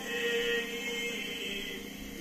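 Marsiya, an Urdu elegy, chanted by a male reciter: he holds one long sung note that fades out near the end.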